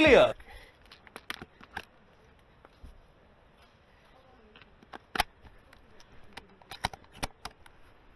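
A brief shout right at the start, then scattered sharp clicks and knocks from handling an airsoft sniper rifle and gear while it is swung around, a few just after the start, one about five seconds in and a quick cluster near the end.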